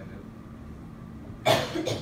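A person coughs once, short and loud, about one and a half seconds in, over a faint steady room hum.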